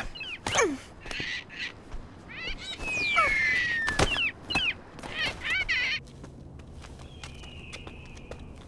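Cartoon squawks and caws from a winged, bird-like creature, with a falling whistle about three seconds in and a sharp thud about a second later, as it lies sprawled on the ground. From about six seconds a quieter steady low hum.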